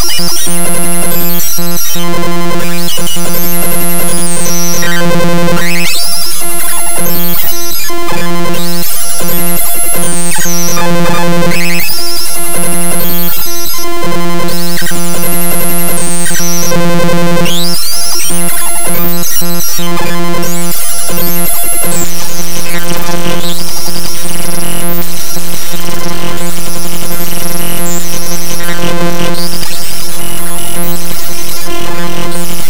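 Bytebeat one-liner music generated live in ChucK: loud, dense digital tones over a steady low drone, with quick sweeping glides up high. The pattern changes and gets slightly louder about 22 seconds in.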